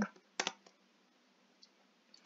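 A single sharp click about half a second in, from a computer being operated with mouse and keyboard, followed by two faint ticks.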